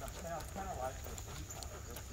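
Faint talking in the first second, over footsteps and light clicks of a person and a dog walking on a paved path.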